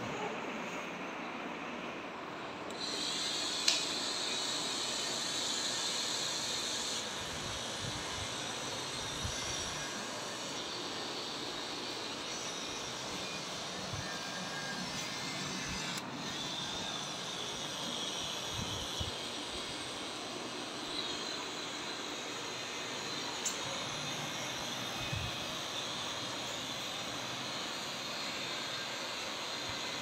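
Small battery-powered DC gear motor of a toy construction-kit car whirring steadily, with a few light knocks from the car being handled.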